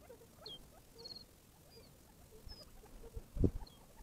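Gambel's quail calling softly, with scattered short high chirps and low clucking notes. A loud, low, muffled thump comes about three and a half seconds in.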